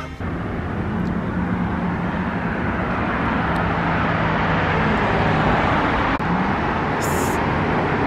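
Road traffic on a city street: a steady engine hum with tyre noise that grows louder over the first few seconds, and a short hiss about seven seconds in.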